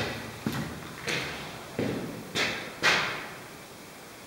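Footsteps on a hard floor, about six steps at an even walking pace, each a short thud with a scuff; the last and loudest comes about three seconds in.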